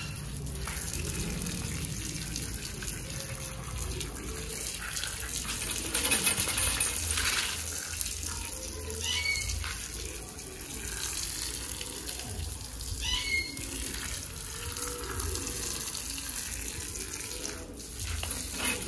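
Garden hose water spraying steadily onto a wet dog and a brick floor, rinsing the shampoo out of its coat.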